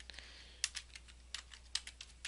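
Computer keyboard being typed on: a faint, uneven run of about a dozen short key clicks.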